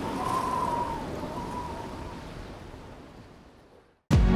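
A steady rushing noise, with a faint wavering high tone in about the first second, fading gradually away to silence by the end.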